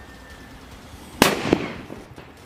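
A golden Lakshmi bomb firecracker goes off with a single loud bang about a second in, inside a cement-lined hole in the ground. A second, smaller crack comes a moment later, and the sound dies away quickly.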